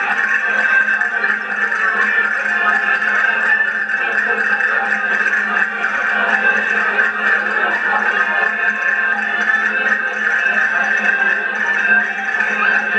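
Accordions playing a folk dance tune without a pause, the sound thin and compressed as on an old home video recording.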